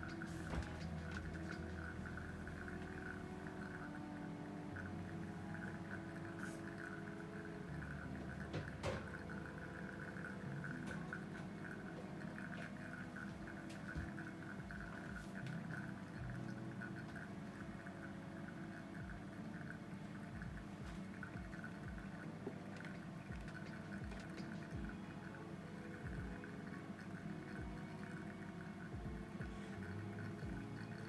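Soft background music with slowly changing sustained notes, over faint, irregular dripping of brewed coffee draining from a Chemex paper filter into its glass carafe.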